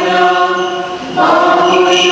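Choir singing a slow liturgical chant in long held notes; a short dip comes just after a second in, then a new phrase starts.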